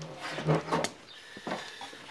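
Handling noise: several short, soft knocks and rustles from a sheet of printer paper being picked up and handled at a wooden work table.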